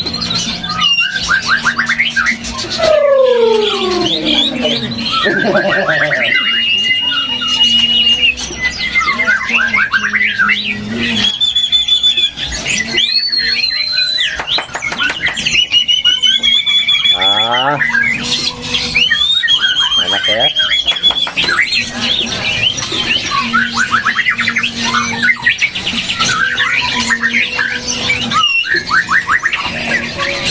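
White-rumped shama (murai batu) singing a long, varied song: clear held whistles, quick trills and sliding notes following one another without pause.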